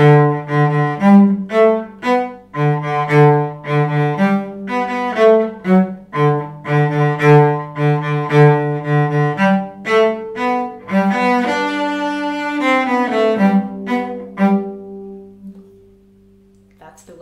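Solo cello played with a détaché bow stroke: quick repeated notes in a short-short-long rhythm, with the short notes dug in and the long notes pulled fast and released. The passage broadens into longer notes in the last third and ends on a held note that fades away.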